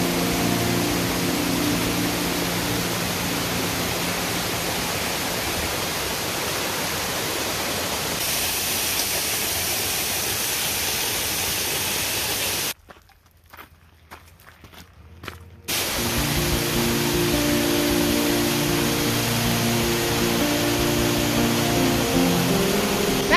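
Waterfall rushing in a steady, loud roar of spray and falling water. About thirteen seconds in it cuts out abruptly for about three seconds, then returns with background music underneath.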